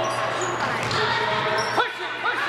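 Sounds of a basketball game on a hardwood gym court: the ball bouncing, sneakers squeaking and players and spectators calling out, echoing in a large hall.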